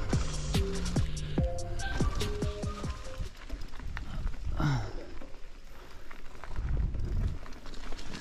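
Electronic music with a beat that stops about three seconds in. It gives way to the noise of a mountain bike riding a dirt trail: tyres on the dirt, with scattered knocks and rattles from the bike.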